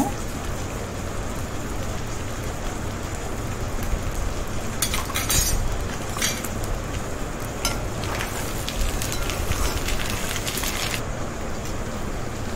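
Duck fry sizzling steadily in hot oil in a pan, with a few clinks of a utensil against the pan around the middle.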